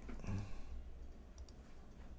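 A couple of faint computer mouse clicks over quiet room tone.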